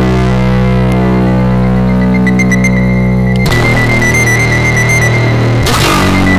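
Loud instrumental music of sustained, droning chords that change to a new chord about three and a half seconds in, with a thin steady high tone running above.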